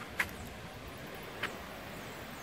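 Steady low outdoor background noise, with two short, sharp high-pitched sounds: a louder one just after the start and a fainter one past the middle.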